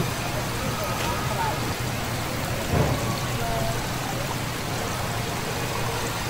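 Steady splashing of thin water streams pouring from a spray pipe into a live shellfish tank of clams and mussels, with a brief low thump about three seconds in.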